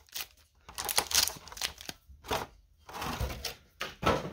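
Foil booster-pack wrappers and clear plastic packaging crinkling as the packs are handled and shuffled, in irregular rustles with a short pause around the middle.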